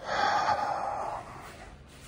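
A man's breathy gasp, lasting about a second and then trailing off, reacting with amazement to the room in front of him.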